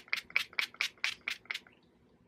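Pump-action spray bottle of facial setting mist sprayed in quick repeated pumps at the face, a fast run of short hisses about four or five a second that stops near the end.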